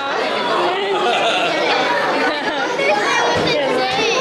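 Overlapping chatter of several voices in a large room, with no single clear speaker.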